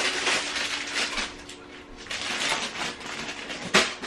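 Crinkling and rustling of plastic food packaging as groceries are handled and unpacked, with a sharp knock near the end.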